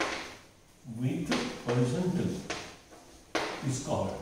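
A man speaking in short phrases while writing on a blackboard, with chalk knocking and scraping against the board.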